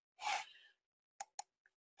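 A short intake of breath, then about a second later two quick computer-mouse clicks, a fifth of a second apart.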